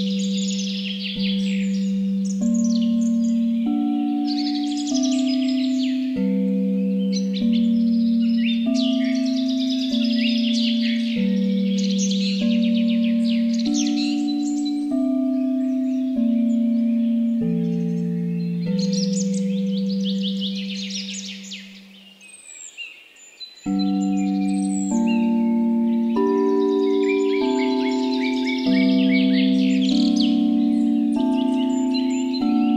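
Tibetan singing bowls struck again and again, a new ringing tone about every second and a quarter, the tones overlapping at shifting pitches, over birdsong chirping in bursts of a few seconds. The bowl tones die away about 22 seconds in and start again a second and a half later.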